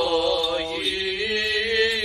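Armenian Apostolic liturgical chant: a single voice intoning a slow melody in long held notes, the pitch stepping down a little about halfway through and then holding.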